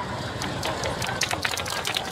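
A small group clapping hands: scattered, irregular claps that grow denser in the second half, over steady street background noise.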